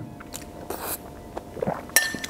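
A man chewing a mouthful of spaghetti in tomato sauce: soft, wet mouth clicks and a short breathy noise about three quarters of a second in.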